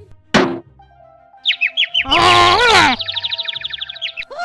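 Cartoon sound effects over faint music. A sudden hit comes first, then a string of short falling bird chirps. A loud cartoon squawk follows that rises and falls in pitch, then a fast chirping trill.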